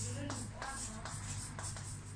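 Chalk writing on a chalkboard: a quick run of short scratchy strokes and taps as letters are written, with the odd brief squeak, over a steady low hum.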